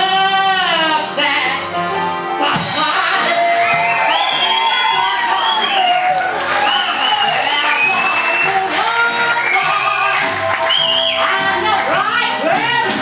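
A singer holds a long wavering final note at the end of a stage musical number. About two seconds in, the audience breaks into cheering, whooping and applause that carries on over the accompaniment.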